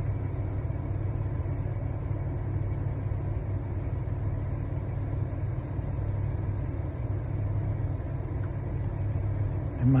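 Steady low rumble of a car's interior, heard from inside the cabin, even throughout.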